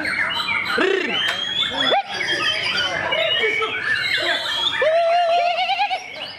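White-rumped shama singing a rich, varied song of quick whistles, warbles and trills, ending with a rapid high trill over a long, slightly rising whistle.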